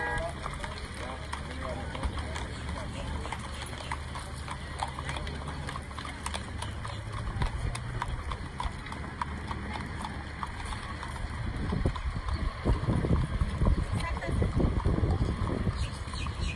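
Horses' hooves clip-clopping as they walk on a paved street, with voices in the background. A louder low rumble builds over the last few seconds.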